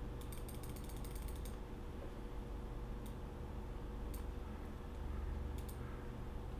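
Computer mouse scroll wheel clicking rapidly through its notches for about a second, then a few single clicks, over a steady low hum.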